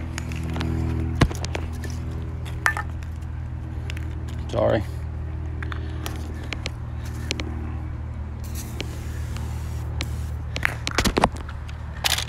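Short hisses of lubricant spray being applied to hedge trimmer blades, with clicks from handling the spray bottle and trimmer, over a steady low hum.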